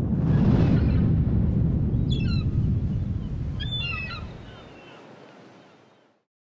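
Logo-sting sound effect: a low rushing rumble that swells in, holds for a few seconds and fades away, with two short sets of bird calls about two and four seconds in.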